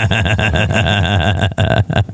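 Two men laughing heartily into close microphones, a fast run of pulsing laughs that breaks off briefly near the end and then picks up again.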